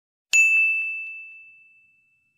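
A single bright chime of a logo sting, struck about a third of a second in and ringing out over about a second and a half, with a few faint, fading echoes of the strike.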